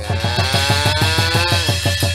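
Live stage-band music: a fast run of drum hits, about seven or eight a second, under a long held note that dips in pitch near the end.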